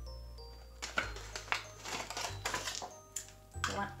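Quiet background music, with a scatter of light plastic clicks and rattles as a string of bubble lights is handled.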